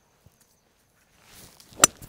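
A seven wood swishing through the downswing, then striking a golf ball off the fairway turf with one sharp, loud click near the end.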